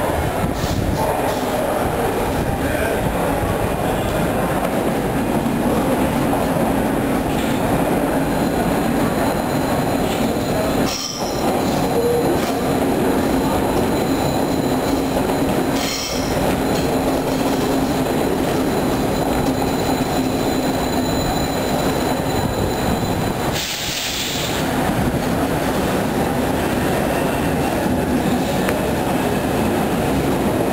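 Athens metro electric trains running through a station, one pulling out as another rolls in on the next track: a steady, loud rumble of wheels on rail with a low motor hum and thin high wheel squeal.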